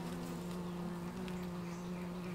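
Honeybee colony humming at the hive: a steady, even low buzz that holds one pitch. The bees are calm.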